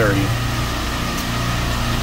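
Steady low hum of running machinery, unchanging.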